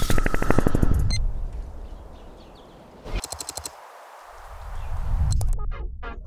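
Editing sound effects: a sudden burst of rapid clicking that fades out over about a second, a shorter burst of rapid clicks about three seconds in, then a whoosh that swells up near the end.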